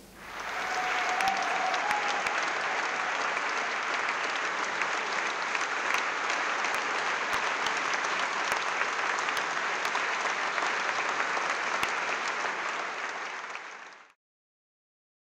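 Concert audience applauding steadily, swelling up within the first second and fading away near the end.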